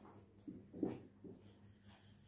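Marker pen writing on a whiteboard: a few faint, short strokes as figures are written.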